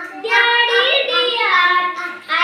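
Children singing an action rhyme: one sung phrase with long held notes that slide up a little in the middle and back down, after a brief breath at the start.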